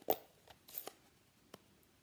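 A few light clicks and knocks from a plastic ink-pad case being handled. The sharpest click comes right at the start, smaller ones follow about half a second and just under a second in, and a faint tick comes around a second and a half.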